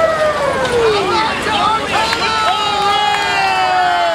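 Several siren-like wails overlapping: each sweeps up quickly and then winds slowly down in pitch. One starts at the beginning and more join about halfway through, over the murmur of a parade crowd.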